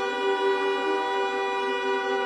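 Orchestral film-score music: a brass section, French horns and trombones, holding one long sustained chord without change.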